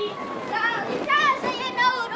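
Several children's voices calling and shouting over one another, high-pitched and rising and falling, as children at play.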